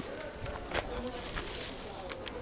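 Quiet outdoor market background: faint distant voices with a few light clicks scattered through it.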